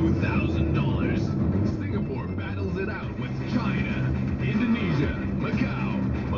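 Car radio playing, a voice talking over music, heard inside a moving car's cabin with steady engine and road noise beneath.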